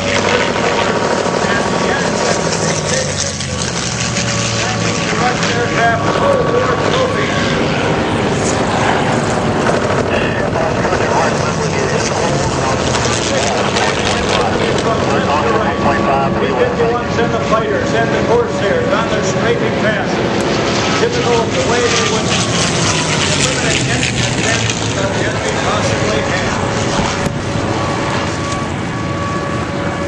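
North American T-6 Texan trainers flying over in formation, their Pratt & Whitney R-1340 radial engines droning steadily. The drone falls in pitch as the planes pass, with voices underneath.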